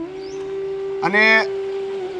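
Background music: a single note held steadily, with a brief voiced sound about a second in.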